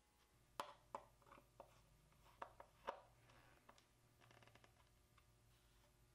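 Quiet, sharp clicks and taps of hand work with a screwdriver, about seven in the first three seconds, then a faint quick run of small clicks.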